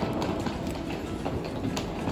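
Hard-shell suitcase wheels rolling over a tiled floor: a continuous rumble with irregular clicks as the wheels cross the tile joints.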